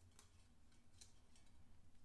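Two faint snips of hand shears cutting through thin white broom twigs, one just after the start and one about a second in.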